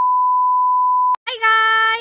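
Steady test-tone beep from a colour-bars transition card, which cuts off about a second in. It is followed by a child's voice calling out on one held, high note.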